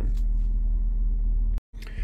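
Steady low-pitched hum inside a car's cabin, with a brief dropout near the end.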